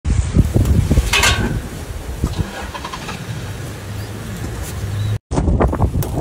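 A vehicle engine running at idle, a low steady rumble. It breaks off briefly a little after five seconds in.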